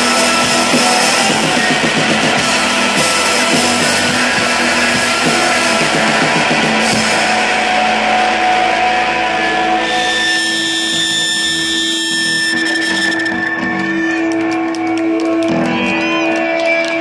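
Psychedelic rock band playing live and loud: distorted electric guitars over a drum kit. About ten seconds in, the full-band playing drops away, leaving a few long held guitar tones ringing on.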